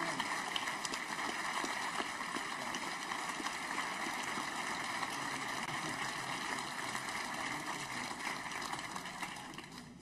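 A large crowd applauding steadily, the clapping dying away near the end.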